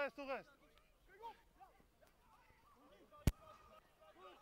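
A man's voice says a word at the start, then faint voices continue underneath. About three seconds in there is a single sharp click.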